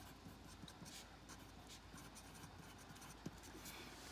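Wooden graphite pencil writing on paper: faint, short scratching strokes of hand lettering.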